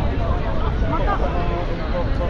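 Busy city-street ambience: passers-by talking close to the microphone over a steady low rumble of road traffic.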